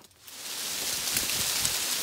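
Lime tree being shaken at its base: a steady rush of leaves and branches rustling, building up over the first half second.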